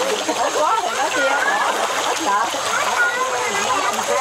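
A dense shoal of cá he (tinfoil barbs) splashing and thrashing at the water surface as they feed, a continuous splattering, with people's voices chattering over it.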